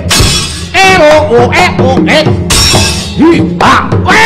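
Gamelan playing fight music for a wayang kulit battle, with the dalang's kecrek (hanging metal plates struck with the foot) clashing in rapid repeated crashes, and arching vocal cries over it.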